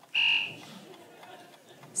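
A quiz contestant's buzzer sounding once: a short, steady, buzzy tone lasting about half a second, followed by low room noise.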